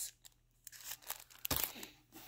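Cellophane wrapping on a paper pack crinkling as it is handled and set down on a pile of other packs, with a light knock about one and a half seconds in.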